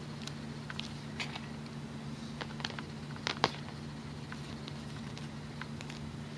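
Small scattered clicks and ticks of a metal hook and rubber loom bands being handled, the loudest about three and a half seconds in, over a steady low hum.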